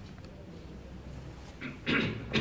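A man coughing into his hand: two short coughs near the end, over quiet room tone.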